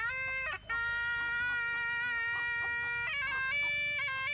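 Shawm (kèn) with a brass bell playing a nasal, reedy melody. A few stepped notes are followed by a brief break about half a second in, then one long held note lasting over two seconds, and the tune moves on to higher notes near the end.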